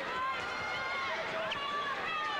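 Boxing arena crowd noise, with scattered voices shouting from around the ring over a steady background din.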